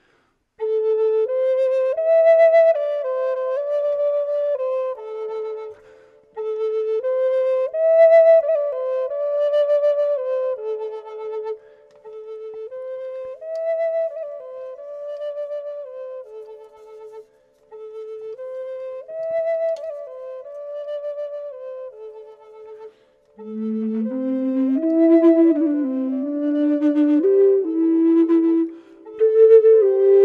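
Native American flutes in A minor. A short melody on the higher flute is played and then repeated over and over by a looper, the phrase coming round about every five and a half seconds. A little over twenty seconds in, a low flute an octave below joins live, harmonizing with the loop.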